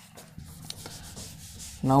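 Whiteboard eraser rubbing across a whiteboard, wiping off marker writing: a quiet, uneven scrubbing noise, with a man's voice starting just at the end.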